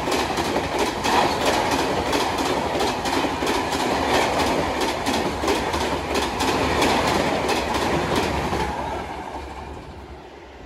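Coaches of an Indian Railways express passenger train rushing past at high speed: a loud rushing noise with a rapid, regular clatter of wheels over rail joints. It fades away near the end as the last coach goes by.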